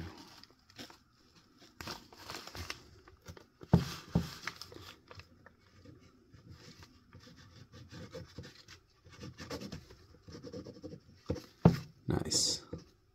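A metal click pen writing on crumpled wrapping paper: faint scratching of the tip mixed with paper crinkling and rustling. A few soft knocks come about 4 s in and again near the end.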